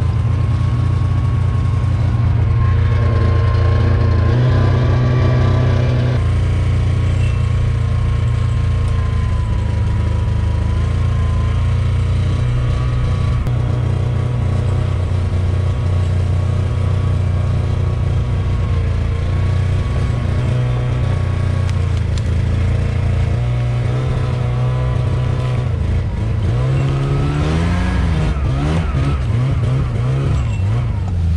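Ski-Doo Skandic snowmobile engine running steadily under load while towing a sleigh loaded with slab wood through snow, with a steady high whine alongside it. The engine gets louder from about three to six seconds in, and near the end its pitch rises and falls as the throttle is worked.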